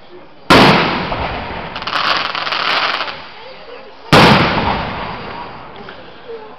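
Aerial firework shells bursting: two loud bangs about three and a half seconds apart, each dying away in a rolling echo, with a burst of dense crackling in between.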